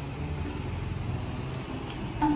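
Toyota Land Cruiser Prado 150's petrol engine running at low speed as the SUV creeps forward down a driveway: a steady low hum.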